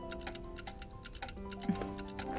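Background music of soft held tones over a steady, fast clock-like ticking.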